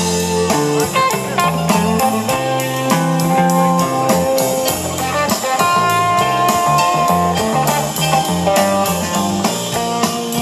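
Rock band playing an instrumental jam live: electric guitar holding long lead notes over bass, keyboards and a drum kit keeping a steady cymbal beat.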